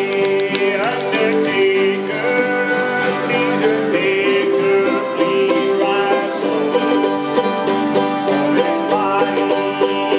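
Acoustic bluegrass string band, with guitars, fiddle and mandolin, playing a tune together at a steady level.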